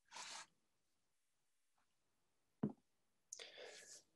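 Near silence in a pause between spoken sentences, with a faint breath at the start, a soft tap a little past halfway, and another faint breath in just before speech resumes.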